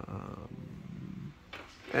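A man's drawn-out, low, creaky 'uhh' hesitation sound lasting over a second, followed near the end by the start of speech.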